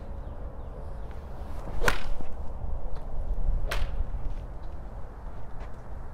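Forged blade iron striking a golf ball off a range mat: one sharp crack about two seconds in, then a fainter crack nearly two seconds later.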